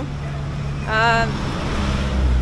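City road traffic with a motor vehicle engine idling close by, a steady low hum; a deeper rumble builds near the end.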